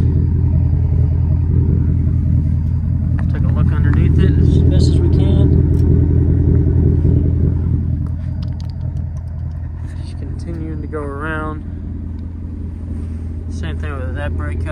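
2019 Ford Mustang GT's 5.0 V8 idling through an aftermarket exhaust, a steady deep rumble. It is louder for a few seconds in the middle, then drops back somewhat.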